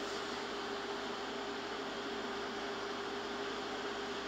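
Steady hiss of background noise with a constant low hum tone running under it; no speech and no distinct events.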